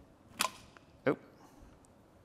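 Two short, sharp clicks about two-thirds of a second apart, from hands working the back of a touchscreen voting machine.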